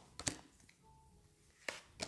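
Tarot cards being dealt from the deck onto a table: a few soft, short taps as cards are drawn and set down, with quiet between them.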